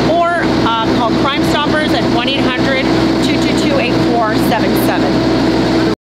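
A woman's voice speaking over a steady mechanical hum, cutting off suddenly near the end.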